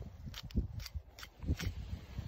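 A knife cutting through goat hide: a handful of short, crisp snicks spread through the two seconds, over low rumbling handling noise.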